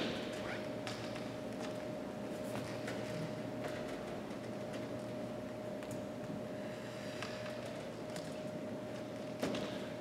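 Quiet room tone in a large hall: a steady faint hum with a few soft, scattered taps.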